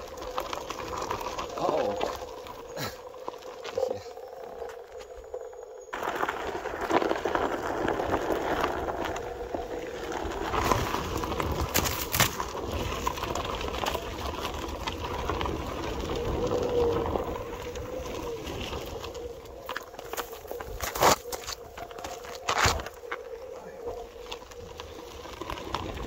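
Onewheel electric board rolling along a dirt and gravel trail: tyre noise with a steady hum, and a few sharp knocks about halfway through and again near the end.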